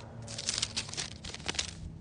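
Paper pages rustling and crinkling in a quick, irregular string of soft rustles, as pages are leafed through to find a passage.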